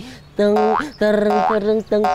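A man's voice singing a few short notes in a comic style, each note sliding upward at its end.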